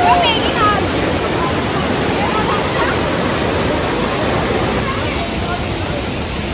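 Waterfall cascading into a rocky pool, a steady rush of water. Faint voices of people can be heard in the first second or so.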